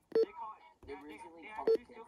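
Two short key-press beeps from the RadioShack 12-996 weather radio's touch screen as its menu is tapped, about a second and a half apart.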